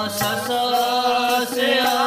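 Sikh Gurbani keertan: a man singing over a harmonium, with tabla strokes keeping time.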